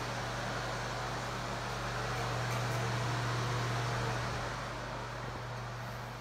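Steady ventilation fan noise: a low hum under an airy hiss, swelling slightly in the middle.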